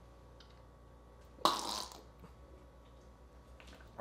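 A man gives one short, harsh splutter of breath from the throat about a second and a half in, as a dry scoop of beetroot powder coats his throat.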